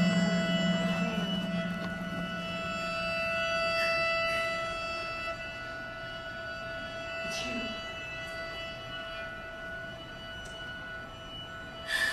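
Live theatre band holding a long sustained chord that slowly dies away, with a few faint clicks over it.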